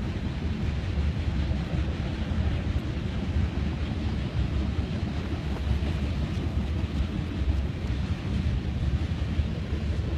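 Freight train cars rolling past with a steady low rumble, mixed with wind buffeting the microphone.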